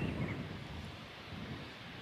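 Wind blowing across the camera microphone, a low rumble that eases off after the first moment.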